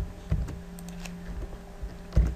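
Computer keyboard keys pressed a handful of times in quick, separate clicks while editing code, as in copying a line and starting a new one.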